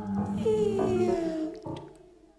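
Female jazz vocalist singing a long note that slides downward in pitch over a steady low accompaniment, then fading out near the end.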